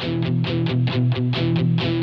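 Guitar picking a quick, even pattern of notes, about seven a second, over sustained low notes in a song's instrumental intro.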